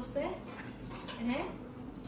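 Light metallic clinks and rattles of a small metal object being handled.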